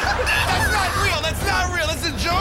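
Several men's voices talking and shouting over one another, with a low steady rumble underneath.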